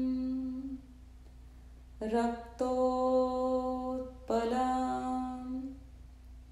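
A voice chanting a devotional mantra in long, steady held notes. One note fades out early, and after a short pause two more drawn-out notes follow with a brief break between them.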